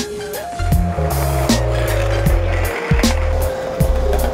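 Music track with heavy bass and regular drum hits. Over it, a skateboard runs on concrete, a rough scraping hiss that swells for about two seconds in the middle.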